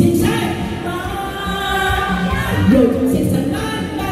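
A woman singing a Korean song into a microphone over an instrumental backing track, holding long notes with a slide in pitch about three-quarters of the way through.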